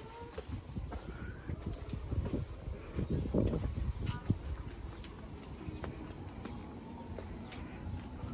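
Irregular low thumps and rustling of a handheld phone being carried while walking along a stone path, with faint outdoor background; the thumps are densest in the middle.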